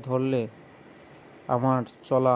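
Speech in two short phrases with a pause between them, over a faint steady high-pitched whine.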